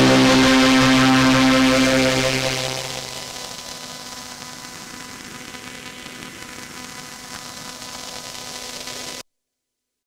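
A held string-synth chord from a Behringer Solina String Ensemble, run through an OTO Machines BOUM, fades out over about three seconds. A steady low hum and hiss remain until the sound cuts off abruptly near the end.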